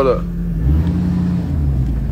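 Ford pickup truck's engine running, heard from inside the cab: a steady low drone whose pitch shifts briefly about halfway through.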